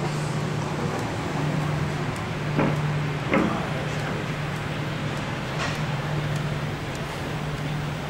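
Steady rushing background noise of a ship's open deck with an even low hum beneath it, broken by two short knocks a little under a second apart about two and a half seconds in.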